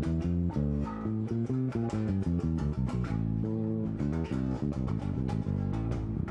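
Five-string electric bass guitar played solo: a quick run of single plucked notes, several a second, each with a sharp pluck at its start.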